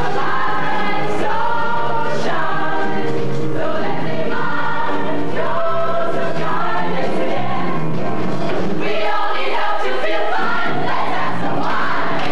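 A stage-musical cast singing together in chorus, with musical accompaniment.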